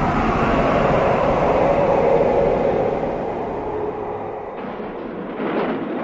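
Horror-film soundtrack roar: a dense rumbling with a held eerie tone in it, fading off over the last few seconds.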